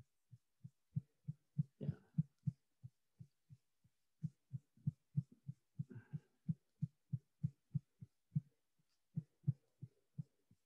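Faint, soft low ticks, about three a second with a short pause near the middle, from a computer mouse's scroll wheel being turned steadily.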